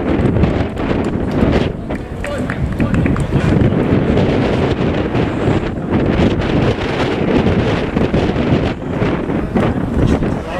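Loud wind buffeting the camera microphone, with faint voices of people around the pitch underneath.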